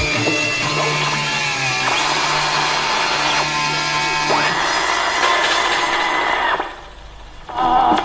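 Industrial post-punk band's electronic machines holding a droning, buzzing noise after the beat stops, with held tones shifting every second or so. The noise cuts off about six and a half seconds in, and a short burst of sound follows near the end.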